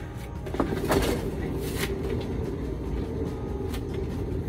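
A paint spinner starting up about half a second in and turning a wet acrylic pour painting, running with a steady hum, with a few light clicks.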